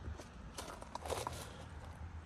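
Faint rustling and light scuffing as a hand-held phone is moved around a car interior, with a few soft clicks.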